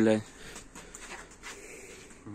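A spoken word ends just as it begins. After that there is only quiet room noise in a small garage, with a few faint soft rustles and taps.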